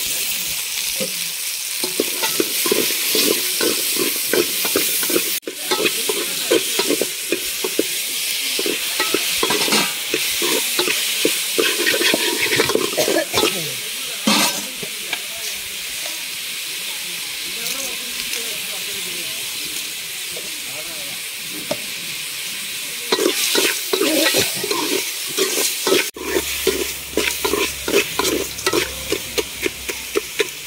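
Small onions and tomatoes sizzling as they fry in an aluminium pot. A metal ladle scrapes and stirs them against the pot in quick strokes, stopping for several seconds in the middle while the frying hiss goes on, then stirring again near the end.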